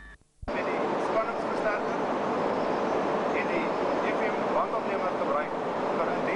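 Brief dropout, then steady background noise of a large work hall with faint indistinct voices in it, starting abruptly.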